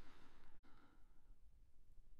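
A faint breath from the voice, fading out within the first second, then near silence.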